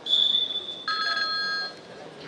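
Electronic timing signal from the wrestling scoreboard: a high steady beep for most of a second, then a second, chord-like tone for about a second. It sounds as the break clock reaches 0:30, marking the end of the 30-second break between periods.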